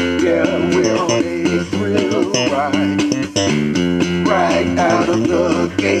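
Rock music: an electric bass guitar plays the bass line under a steady drum beat, with a wavering lead melody above it.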